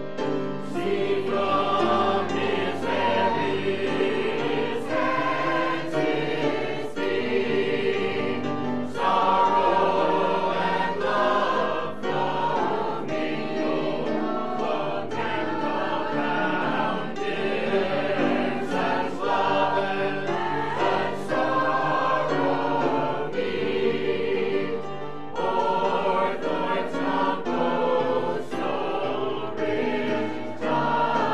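Mixed church choir of men and women singing a gospel cantata number under a conductor.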